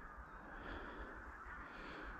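Faint distant crow caws, a few calls about a second apart, over low wind noise.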